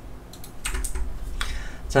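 Computer keyboard keys being pressed: a handful of separate sharp clicks in the second half, as the CAD user cancels one command and starts typing the next.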